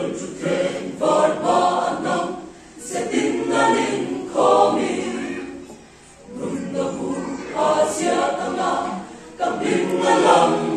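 Mixed choir of men and women singing, coming in suddenly at the start and going in phrases broken by short pauses about every three seconds.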